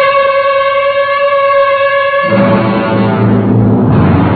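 Orchestral music bridge in a radio drama: a single high note is held, then a little past two seconds in a fuller, lower orchestral chord comes in.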